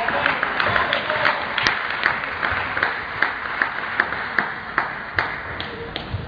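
Irregular sharp clicks of table tennis balls hitting tables and bats from several matches in a large hall, a few every second, over a steady murmur of voices.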